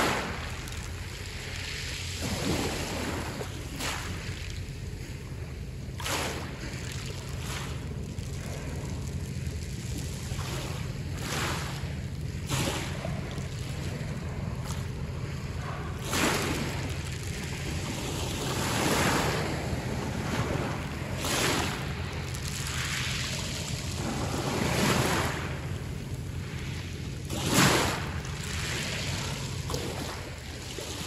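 Small sea waves breaking and washing up a pebble beach, swelling every few seconds, over a steady low rumble.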